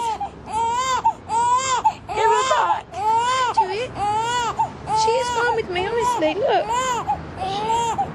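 Newborn baby crying in short, rising-and-falling wails, about two a second, on and on without a break.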